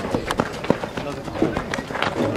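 Young baseball players shouting calls across the field during an infield fielding drill, broken by several sharp knocks of a rubber baseball on bat or glove, the sharpest about two-thirds of a second in.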